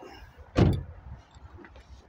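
A car door being shut: one solid thud about half a second in.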